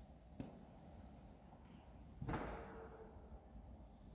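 Power folding soft top of a Mercedes-AMG E53 convertible retracting, heard faintly: a light click about half a second in, then a thump a little after two seconds that fades out with a brief whine.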